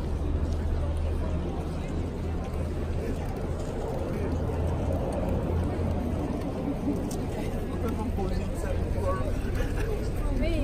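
Outdoor street crowd: many people chatting indistinctly around and ahead, over a steady low rumble.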